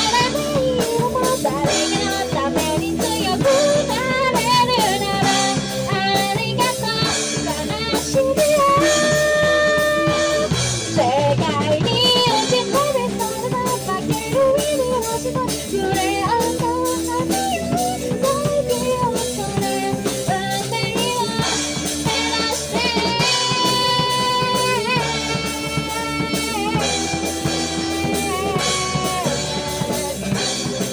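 Live rock band playing a cover of a Japanese anime theme song: a woman sings over drum kit, electric guitar, bass guitar and keyboard.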